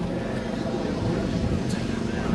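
Desert Aircraft DA-170 twin-cylinder two-stroke petrol engine of a 40% scale Yak 55 model plane idling steadily on the ground.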